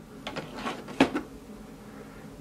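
Plastic blister-card toy packaging being handled: a few light clicks and rustles, the sharpest about a second in.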